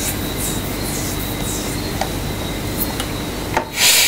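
A run of soft rubbing or swishing sounds over a steady background hiss, then a single click about two seconds in and a louder, short rustle near the end.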